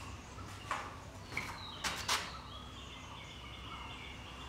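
Birds calling in the background, short high calls, with a few brief sharp sounds about a second and two seconds in.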